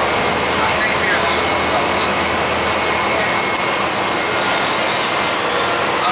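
Cabin noise inside a 2005 Gillig Phantom transit bus: its Cummins ISL diesel engine and Voith transmission run with a steady, loud rumble and rush, and a thin high whine comes in for about a second near the middle.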